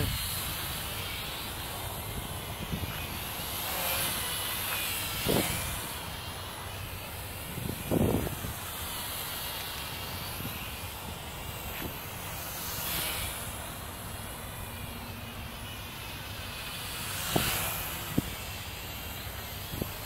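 JJRC H8C toy quadcopter's geared motors and propellers whirring in flight, the pitch of the buzz sweeping up and down as it moves about; its motor gears run on freshly fitted ball bearings. A few brief louder swells break in about 5, 8, 13 and 17 seconds in.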